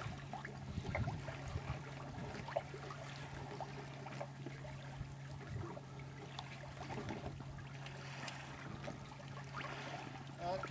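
Water trickling and lapping against a sailing boat's hull, with small scattered splashes and a steady low hum underneath.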